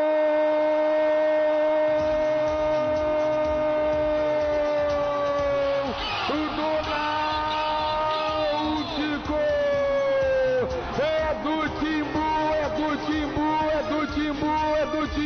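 A radio football narrator's drawn-out goal cry, one "gol" held on a single steady note for about six seconds and sagging slightly in pitch at the end. It then breaks into wavering, warbling vocal runs.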